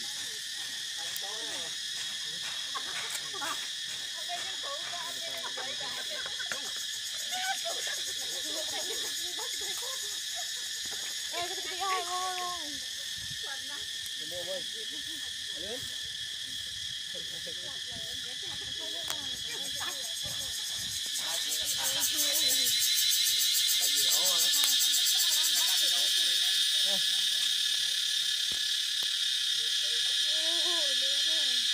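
A steady, high-pitched chorus of insects, swelling louder about twenty seconds in, with people talking quietly underneath.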